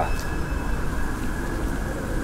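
Steady low outdoor rumble with a faint, steady high tone above it.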